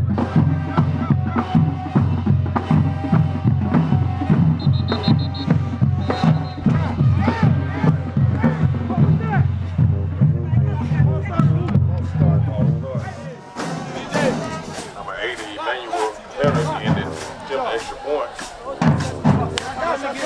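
Background music with a heavy bass and a steady drum beat. The bass drops out about two-thirds of the way through, leaving a lighter section.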